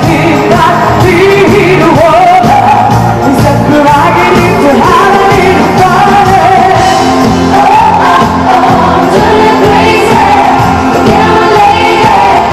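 A woman singing lead into a microphone over a live pop band playing continuously, heard through the concert sound system in a large hall.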